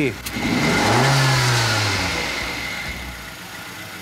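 Car engine running with one spark plug out for a running compression test, revved once as the throttle is snapped open. A click comes just before; the engine's pitch climbs quickly for about a second, then falls back toward idle as it quietens.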